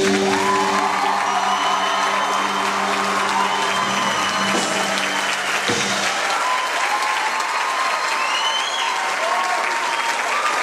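Audience applauding loudly, with the band's last held chord sounding under the clapping until it stops about six seconds in.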